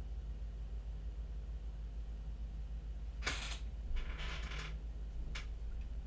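Quiet room tone with a steady low hum, broken by a few brief clicks and rustles a little past the middle, the longest lasting under a second.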